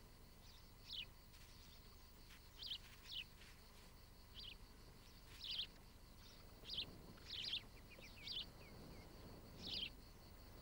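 Faint bird calls: about ten short, high chirps, each sliding down in pitch, spaced irregularly.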